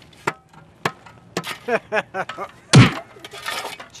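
A few sharp knocks and cracks, then one loud heavy thud about three seconds in, followed by a short rustling scrape. A voice is heard briefly between the knocks and the thud.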